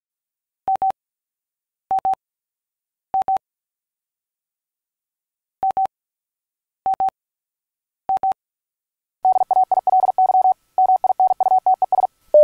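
Morse code tone at one steady pitch: six short double beeps at a slow, even spacing, then from about nine seconds in a fast run of Morse keying.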